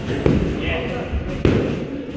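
Boxing gloves striking focus mitts: two sharp smacks about a second apart, with a voice between them.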